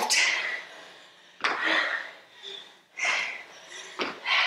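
Hard breathing from exertion: two breathy exhales about a second and a half apart.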